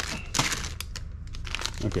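Plastic blind bags crinkling as they are handled, with a cluster of sharp rustles in the first half-second and softer rustling after.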